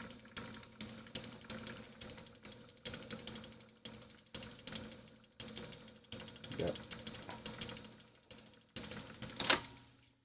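Reel-to-reel tape deck fast-winding a damaged, moldy tape, with rapid, irregular clicking as the tape runs through the transport. A rising whir comes just before the end.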